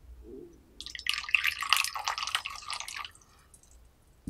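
Tea poured in a thin stream into a small porcelain cup, splashing and trickling for about two seconds before it stops about three seconds in.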